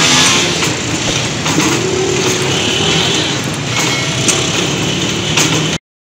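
Loud, steady engine noise and street traffic, with a constant hum and a few faint clicks. It cuts off abruptly near the end.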